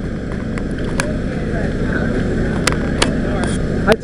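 Steady low outdoor rumble with faint background voices, broken by a few sharp clicks, one about a second in and two close together near three seconds.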